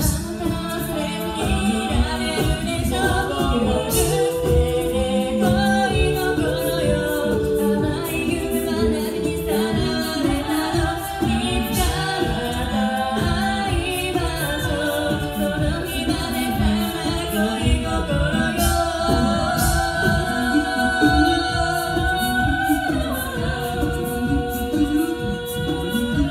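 A six-voice female a cappella group singing into microphones: layered harmonies over a sung low line, with a few sharp percussive hits along the way.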